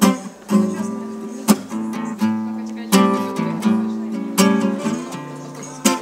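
Acoustic guitar strummed in chords, a new stroke about every 0.7 s, each chord ringing on, with two sharper, harder hits among them.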